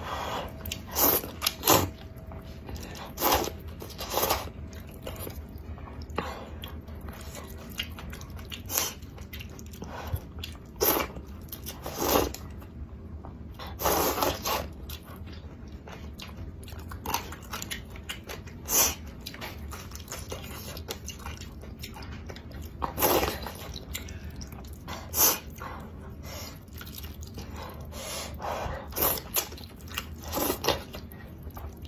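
A person eating wide flat noodles in spicy soup close to the microphone: slurps and chewing in irregular bursts every second or two, a few of them longer drawn-out slurps.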